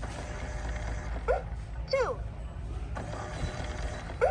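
LeapFrog Pick Up & Count Vacuum toy: its plastic dust balls clatter in the clear chamber. About a second in, a short electronic blip is followed by the toy's recorded voice counting 'two'.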